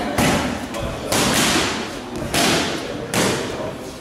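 Boxing gloves striking handheld focus mitts. There are four sharp smacks at uneven intervals, each trailing off briefly.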